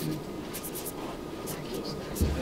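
A felt-tip marker squeaking across a shirt's heat-pressed number as a signature is written. There is a quick run of short strokes about half a second in, then two more near the end.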